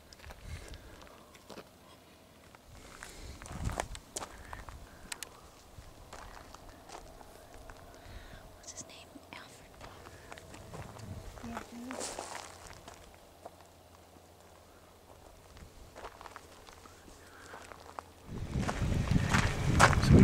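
Faint, irregular footsteps crunching on gravel as a person walks, with a louder low rumble of noise building in the last two seconds.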